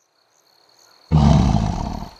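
A big cat's roar, one loud growl that starts suddenly about halfway in and fades over about a second. Faint insect chirping runs underneath.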